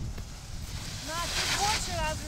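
Wind buffeting the microphone with a low rumble, and people's voices talking from about a second in, with a brief hiss near the middle.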